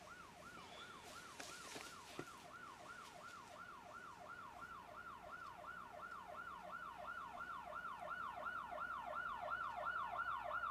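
Emergency vehicle siren sounding a rapid repeating yelp, each cycle sweeping down in pitch, about three to four a second, growing steadily louder as it approaches.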